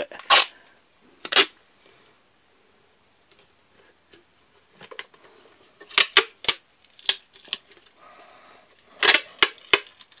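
Sharp clicks and knocks of a plastic drain pipe and wooden end piece being handled, with a quiet stretch in the middle. Near the end, duct tape is pulled off the roll and wrapped round the pipe, giving a short tearing crackle.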